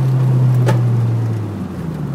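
Toyota MR2 AW11's four-cylinder engine running steadily, heard from inside the cabin, its pitch dropping near the end as the revs fall. A single sharp knock about a third of the way in is a camera banging about inside the glove box.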